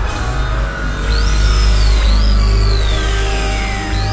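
Experimental electronic synthesizer music: a heavy, steady low bass drone under high tones that jump up sharply about a second in and again about two seconds in, each then gliding slowly down in pitch.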